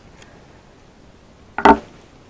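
One short knock near the end, over faint room hiss.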